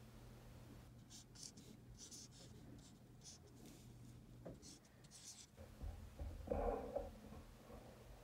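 Dry-erase marker writing on a whiteboard: a run of short, faint, high strokes over several seconds as numbers are written, then a brief, duller, louder bump about two-thirds of the way through.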